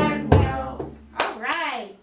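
Voices singing the last notes of a children's hello song over beats on a hand drum, with a final strike about a third of a second in. The music dies away, and a single voice with a rising-then-falling pitch follows near the end.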